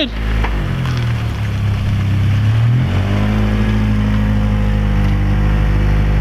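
Acura RSX's four-cylinder engine running as the car pulls away and drives past. It holds a steady pitch, dips briefly, then picks up to a higher steady pitch about three seconds in as the revs rise.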